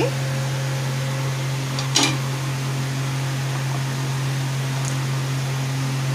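A steady low mechanical hum, as from a fan or kitchen appliance, with one short sharp click about two seconds in.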